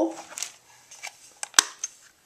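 A few light clicks and knocks from hands handling craft tools and paper on a tabletop, with the sharpest knock about a second and a half in.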